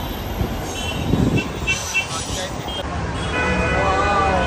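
City street traffic heard from the open upper deck of a tour bus, with passing vehicles and a few short, high horn toots. Voices come in near the end.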